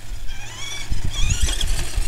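Radio-controlled truck's motor whining as it drives, the pitch rising and falling with the throttle, over a low rumble that builds from about a second in.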